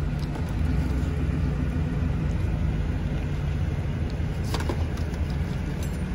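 A car engine idling steadily with a low rumble, kept running for the air conditioning. There are a couple of faint brief knocks near the end.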